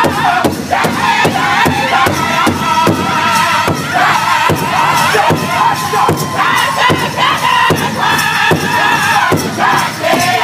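A powwow drum group singing a men's traditional song: several men sing together in high, strained unison over a large hide-topped powwow drum that they all strike at once in a steady beat.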